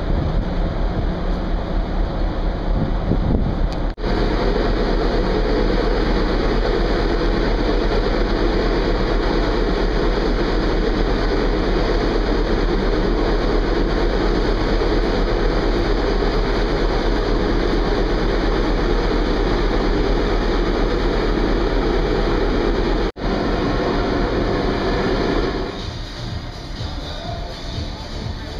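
A steady, loud roar of a cruise ship's funnel and deck machinery mixed with wind on the open top deck. It drops out sharply for an instant about four seconds in and again near the end.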